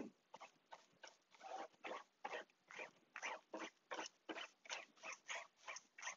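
Faint, rhythmic brush strokes, about three a second: a bristle brush scrubbing glue into aircraft covering fabric over a plywood panel.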